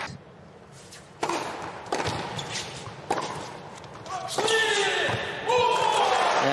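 Tennis ball struck hard by rackets: a serve about a second in, then two more shots about a second apart in a short rally. Near the end, voices rise as the point ends.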